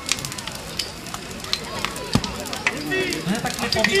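A burning car crackling and popping with many irregular sharp cracks, and one duller thump about halfway through. A child's voice comes in near the end.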